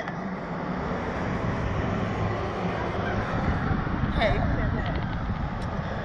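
Steady rushing wind noise on the microphone of the onboard camera of a Slingshot reverse-bungee ride capsule as it hangs and sways in the air.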